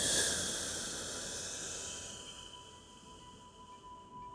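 A long audible exhale: a breathy hiss that starts suddenly and fades away over about two and a half seconds, over soft ambient music with a held tone.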